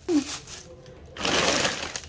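Thin plastic grocery bag rustling and crinkling as hands handle it, starting a little over a second in, after a brief vocal sound at the start.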